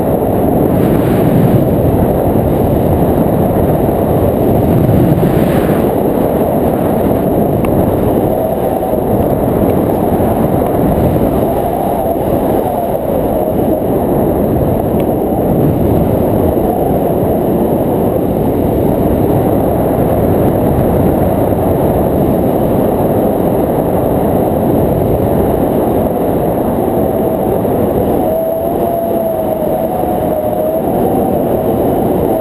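Wind rushing over the microphone of an action camera carried through the air on a tandem paraglider, a loud, steady rumble without breaks.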